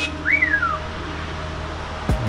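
A man's two-note wolf whistle of admiration: a short rising note, then one that rises and falls away, all within the first second.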